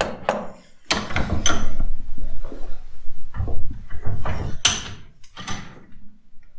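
Workshop handling noise from a bench vise being worked and a motorcycle fork leg being moved, with a few sharp metallic clanks and knocks, the loudest one late on.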